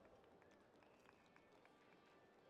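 Near silence: faint outdoor venue ambience with a few faint short ticks.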